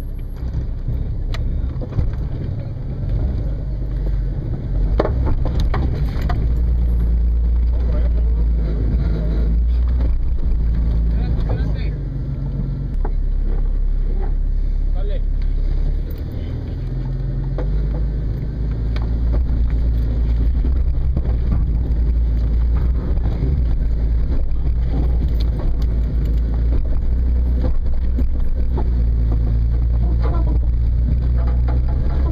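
Jeep Cherokee XJ's engine pulling at low revs while rock crawling, its note rising and falling as the load changes, easing off about halfway through and building again. Scattered knocks come through over the engine.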